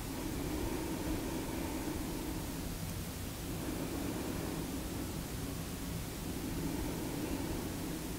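Steady low hiss of room tone and background noise, with no distinct event.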